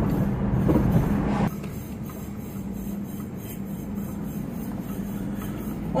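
Car cabin noise while driving: steady road and engine rumble with a low hum. About a second and a half in it drops abruptly to a quieter, even hum.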